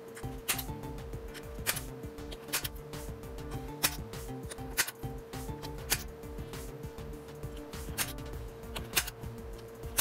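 Sharp clicks of a center punch marking the metal enclosure through a paper template, one hole after another at roughly one a second, over background music.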